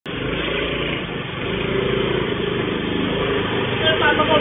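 Honda Activa scooter engine running as it rides in and pulls up, heard through a CCTV camera's microphone. A voice starts just before the end.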